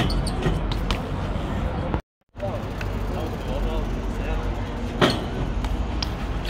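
Chatter of an outdoor crowd over a constant low rumble, with sharp knocks in the first second as a BMX bike is jumped down a set of stairs. The sound cuts out briefly about two seconds in, and another single knock comes about five seconds in.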